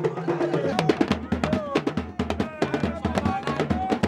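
Fuji music dominated by Yoruba talking drums and other hand drums: quick dense strikes with short bending drum pitches, growing busier under a second in.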